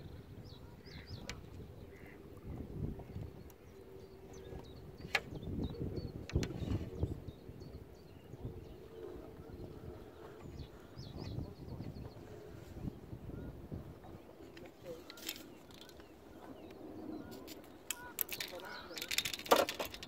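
Gusty wind buffeting the microphone, with a faint steady hum for much of the time and a few sharp clicks and knocks of handled tackle, most of them near the end.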